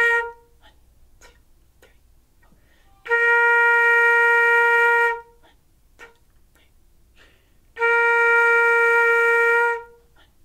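Concert flute holding a steady B-flat in whole notes with rests between: one note ends just after the start, then two more are held about two seconds each, from about three seconds in and again near the end.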